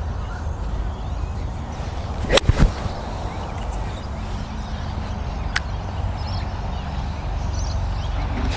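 A full golf swing: the club swishes through and strikes a ball off the turf with a single sharp crack about two and a half seconds in.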